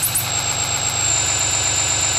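A steady electronic drone, used as a sci-fi "uplink" sound effect: a low, dense humming rumble with a thin, high, steady whine on top, held unchanged.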